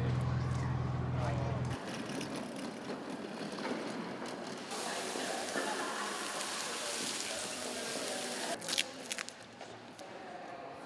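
Indistinct voices and the bustle of people moving about and handling cardboard boxes, with a low hum that cuts off in the first two seconds and a few sharp clicks near the end.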